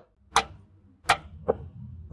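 Three sharp metallic clicks from a Takisawa lathe's quick-change gearbox tumbler lever as it is slid along its positions to gear number 5.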